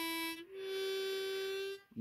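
Diatonic harmonica: a short blown note on hole one, then a longer, slightly higher drawn note on the same hole.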